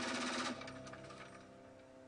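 A burst of rapid automatic fire from a machine gun that cuts off about half a second in, then a fading tail, over background music that is dying away.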